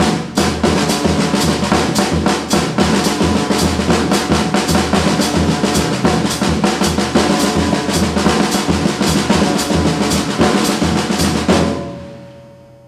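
Drum kit with Zildjian cymbals played with sticks: a fast, dense run of snare, tom and bass drum strokes under cymbal wash. It stops on a last stroke right at the end, the drums left ringing.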